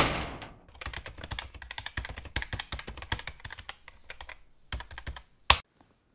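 Rapid, irregular clicking like typing on a computer keyboard, with one sharper click near the end. At the start the ringing tail of the intro's final crash fades out within about half a second.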